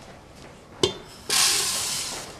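Dry rice grains poured from a glass bowl into a metal pressure cooker, a steady hissing rattle that starts about a second and a half in and fades away at the end. A single short knock comes just before the pour.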